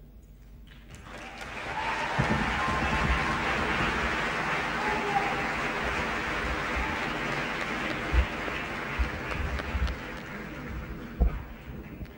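Large audience in a hall applauding, swelling up over the first couple of seconds, holding steady, then dying away near the end, with a few low knocks in the later part.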